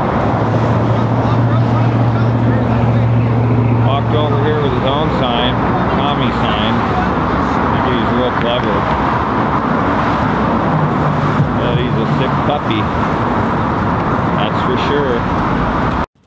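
Steady road traffic at a busy intersection: a continuous rush of passing cars, with a low, steady engine drone through the first five seconds.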